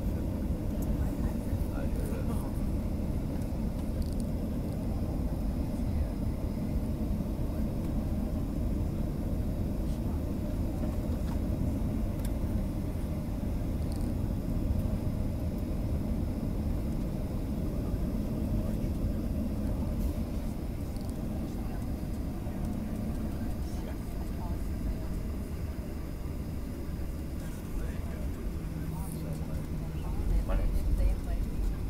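Jet airliner cabin noise while taxiing: a steady low rumble from the idling engines and the wheels rolling along the taxiway. A low hum joins near the end.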